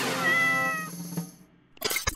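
Cat meow sound effect: one drawn-out call that fades away about a second in, followed near the end by a brief crackly burst of glitch static.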